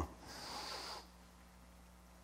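A man's short breath close to the microphone, a faint airy sniff or exhale lasting under a second, then near silence.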